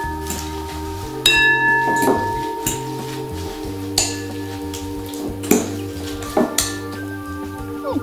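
Salad servers clinking and scraping against a glass bowl in a handful of irregular knocks as lettuce is tossed with a sour cream dressing, over steady background music with long held notes.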